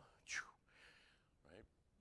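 Near silence, broken by a short faint hiss about a third of a second in and a softly spoken word near the end.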